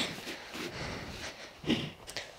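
Quiet outdoor background with one short, soft vocal sound, a murmur or breath, a little before the end.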